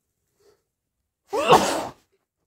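A person sneezes once, loudly, about a second and a half in, in a short voiced burst of about half a second. The cause is a snotty, itchy nose that the uploader wonders could be hay fever.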